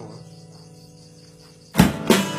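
An acoustic guitar's notes ring out and fade to near quiet, then a sudden loud drum hit comes near the end as the one-man band starts playing again.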